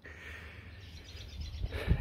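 Outdoor ambience in a pause of speech: faint bird chirps over a steady low rumble.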